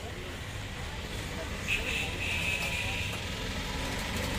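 Low, steady rumble of street traffic, with a thin high-pitched tone lasting about a second near the middle.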